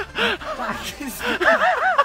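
Laughter: a run of quick, short 'ha-ha' laughs, strongest near the end.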